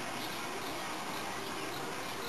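Steady, even background hiss with no distinct sound standing out.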